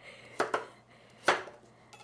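Kitchen knife cutting pumpkin on a cutting board: three sharp chops, two close together about half a second in and a third a little over a second in.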